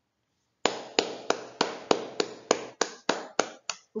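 One person clapping steadily, about three claps a second, starting under a second in.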